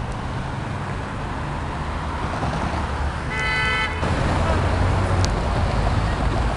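A car horn toots once, briefly, about three and a half seconds in, over the steady low rumble of city traffic and car engines. The engine rumble grows a little louder after the toot.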